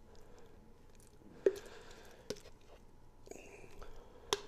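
A spoon scooping mayonnaise out of a jar into a bowl of macaroni: soft wet squishing, with two sharp taps of the spoon, about a second and a half in and again just after two seconds.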